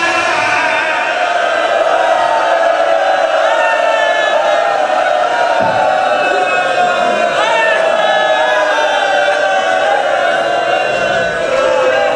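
A group of men chanting together, their voices overlapping in long drawn-out lines.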